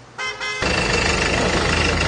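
A short car horn toot, then a sudden jump to loud, steady vehicle and street noise with a thin high whine over it.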